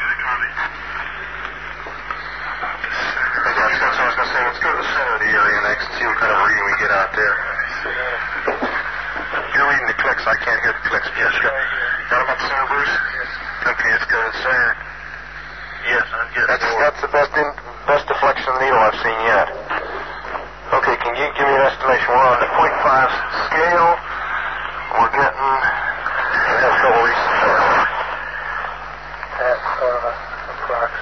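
Several men talking in muffled, lo-fi field-recording speech, with a steady low hum underneath.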